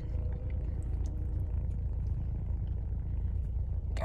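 A person chewing a mouthful of chocolate cake pop-tart, with faint soft mouth clicks, over a steady low rumble inside a car.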